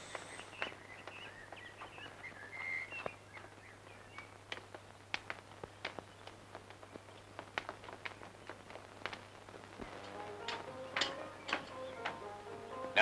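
Birds chirping faintly for the first few seconds, over a low steady hum with scattered sharp clicks. About ten seconds in, piano music starts to play faintly.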